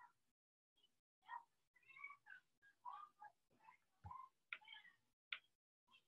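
A cat meowing faintly: a string of short calls, each bending up and down in pitch.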